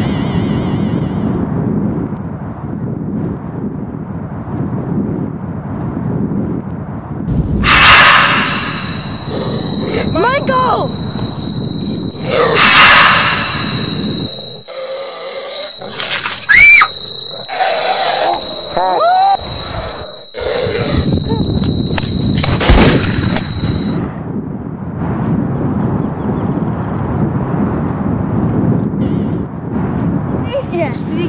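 Wind buffeting the microphone, then, from about eight seconds in, a scuffle with several loud shrieks and yells from children over a steady high-pitched whine that lasts about fifteen seconds. The shrieks come in four loud bursts. Wind noise returns for the last few seconds.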